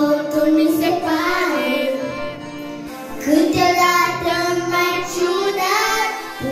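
Young girl singing a pop song into a handheld microphone, holding long notes, with a short break between phrases about two seconds in.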